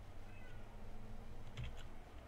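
Computer keyboard keystrokes, a short cluster of faint clicks about one and a half seconds in, over a low steady hum.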